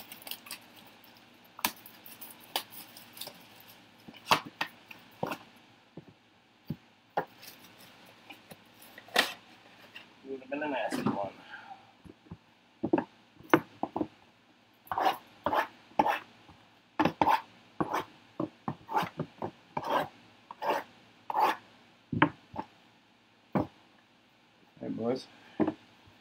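Cardboard trading-card boxes being handled on a tabletop: a long run of short taps and knocks, with rubbing and scraping as boxes are shifted and slid about.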